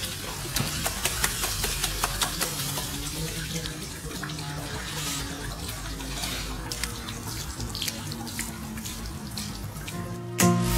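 Swimming-pool water splashing and sloshing as a golden retriever wades through the shallow edge of the pool, a steady wash of water noise dotted with many small splashes and drips.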